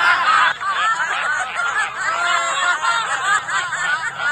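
A group of people laughing together, many voices overlapping in quick, repeated laughs: deliberate laughter-yoga laughing.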